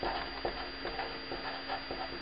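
Felt-tip marker scratching across paper in short, separate strokes, a few a second, as capital letters are written.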